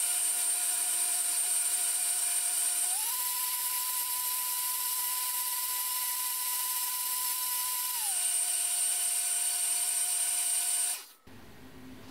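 Magimix countertop blender running on its automatic soup programme, blending hot carrot soup: a steady motor whine that steps up in pitch about three seconds in, drops back down about five seconds later, and cuts off suddenly near the end.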